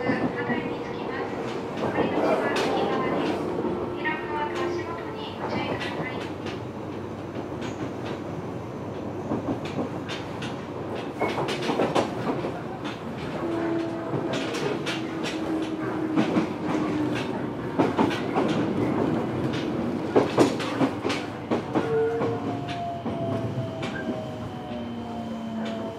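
Running noise heard inside a Fukuoka City Subway 1000N series car at speed: a steady rumble with the wheels clicking over rail joints at irregular intervals of a few seconds, and a few faint steady tones that drift slowly in pitch.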